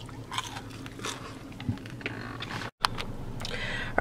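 Someone eating crispy hot wings: scattered crunching bites and chewing, with a low steady hum underneath.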